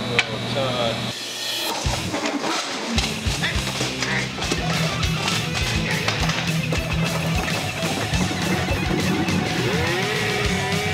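Rock music soundtrack with electric guitar and a steady drum beat. The beat drops out briefly about a second in and comes back in full by about three seconds.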